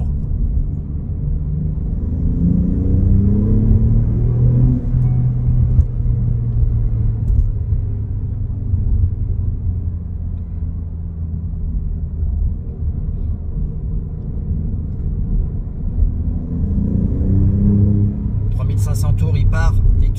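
Alfa Romeo Giulia Quadrifoglio's 90-degree twin-turbo V6, heard from inside the cabin on the move. It rises in pitch as the car accelerates about two seconds in, runs steadily at speed through the middle, and climbs again near the end.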